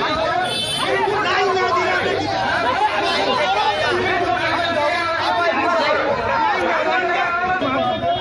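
A crowd of men talking over each other: loud, continuous overlapping chatter in which no single voice stands out.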